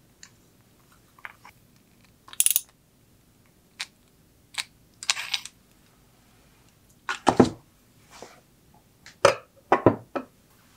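Scattered light clicks and clinks of metal tools against a survival knife's handle, then a few louder knocks as the knife is handled and set down on a hard tabletop. The loudest knock comes about seven seconds in, with two more close together near the end.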